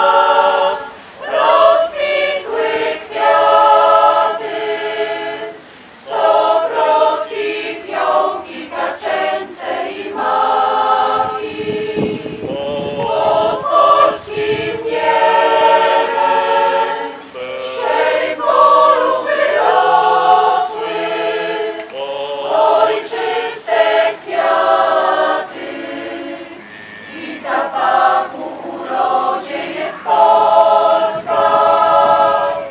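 A choir singing unaccompanied, sustained chords in phrases a few seconds long with short breaks between them.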